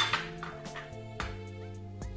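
A glass bowl clinks sharply against glass at the start, with a lighter clink about a second later, over background music.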